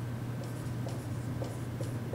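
Dry-erase marker writing on a whiteboard: a string of short scratchy strokes as words are written and a line is drawn, over a steady low hum.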